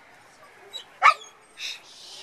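A dog barking once, a single sharp, loud bark about halfway through, with a softer short sound just after it.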